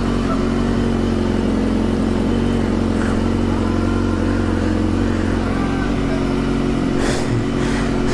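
BMW S1000R's inline-four engine idling steadily as it warms up after a cold start.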